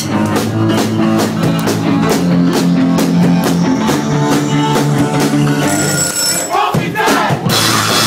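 Live rock band playing loud: distorted guitars and bass over a steady drum beat. Near the end the band drops into a short break, then crashes back in with drums and cymbals about seven and a half seconds in.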